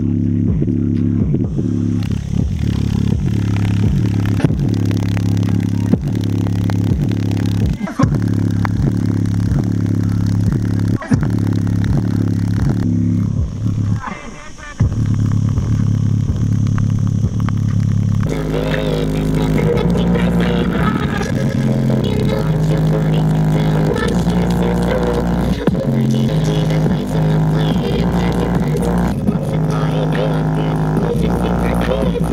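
Bass-heavy music played loudly through a JBL Flip 5 portable Bluetooth speaker, its deep bass notes steady and dominant. The music drops out briefly about fourteen seconds in, and the bass line changes about eighteen seconds in.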